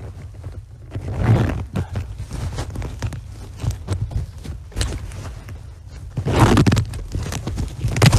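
Fabric of a bee suit rustling as its attached veil is zipped up at the neck, with irregular small clicks and scrapes and a louder rasping stretch near the end.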